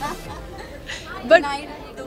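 Speech only: a woman's voice, a short word after a pause of about a second.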